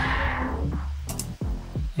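A sound effect standing in for a motorcycle engine, with a low rumbling hum. Its noisy upper part sweeps down and fades within about the first second as a keyframed low-pass filter closes, so the sound darkens and falls away. Music plays underneath.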